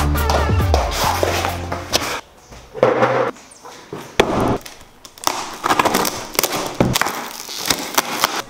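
Background music with a beat for about the first two seconds, then a taped cardboard shipping box being handled and torn open: irregular ripping and crackling of cardboard and packing tape, with a few knocks.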